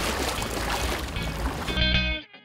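Water washing and splashing around a stand-up paddleboard's hull and paddle as it sets off, an even hiss of water noise. Guitar music comes in near the end.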